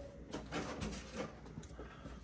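Faint rustling and a few light knocks of plastic toy packaging being handled and set aside.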